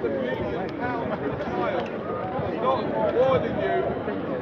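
Indistinct voices of several people talking in the background: crowd chatter.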